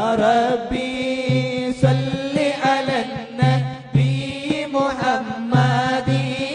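Group chanting of an Arabic moulid: voices reciting devotional verses together in a continuous, sung melody.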